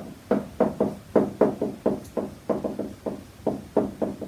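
A whiteboard marker striking and stroking across a whiteboard while kanji characters are written: a quick, irregular run of short taps, about four a second.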